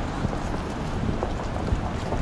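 Steady, noisy city-street ambience picked up by a walking action camera, with a heavy low rumble on the microphone and a few faint ticks.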